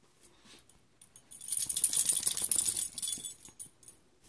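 Small metal bell jingling, shaken for about two seconds, starting about a second in and fading out.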